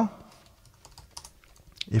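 Computer keyboard typing: a few faint, scattered keystrokes.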